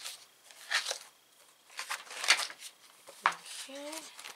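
Paper pages of a flute practice book being leafed through: a few short papery rustles and flicks.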